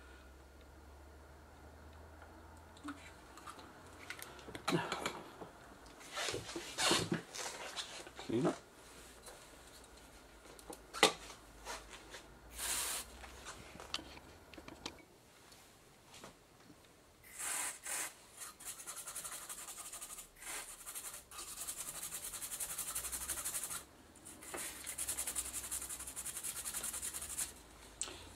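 Excess flux residue being cleaned off the solder side of a freshly soldered circuit board: a high scrubbing hiss in several stretches of a few seconds over the second half. This follows scattered clicks and handling of the board and tools in the first half.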